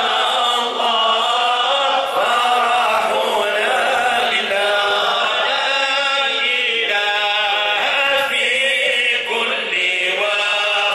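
A group of men chanting Sufi devotional dhikr verses together, continuously and without instruments, sung into handheld microphones.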